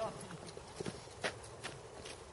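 Footsteps on a dirt and gravel driveway: a few short, sharp taps at walking pace, with a brief voice at the start.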